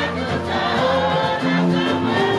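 Gospel music: a choir singing together over instrumental accompaniment with a steady, stepping bass line.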